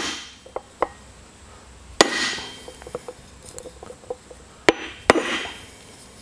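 Hammer blows on a block of timber, driving a bearing race into a boat trailer wheel hub: a few light taps, then three hard whacks, about two seconds in and twice close together near the end, each followed by brief ringing.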